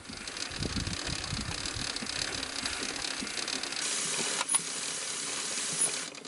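Aerosol chain lube hissing onto a motorcycle's drive chain as the rear wheel turns, the chain clicking and rattling over the rear sprocket. The hiss grows stronger about four seconds in.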